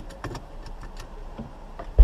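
Light clicks and knocks inside a small car as the driver fumbles low by his seat, over a faint low hum. Right at the end a sudden loud low rumble sets in.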